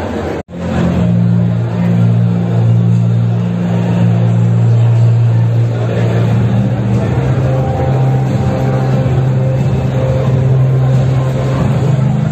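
A loud, steady low drone of a couple of held pitches over a background of hall noise and voices. It steps up slightly in pitch about two-thirds of the way through. The sound cuts out completely for an instant about half a second in.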